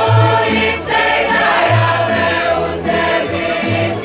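Folk ensemble singing a traditional song in chorus, with women's voices in front, over a plucked-string accompaniment with a bass line that steps between notes about every half second.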